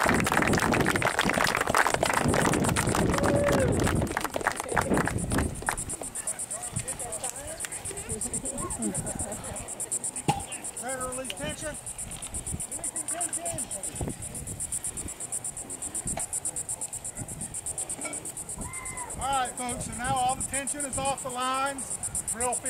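Insects making a steady high-pitched chirring with a rapid, even pulse, under faint distant voices. A louder rushing noise fills the first five seconds, then drops away.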